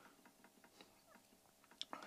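Near silence: faint room tone with a few soft computer-mouse clicks, the sharpest near the end.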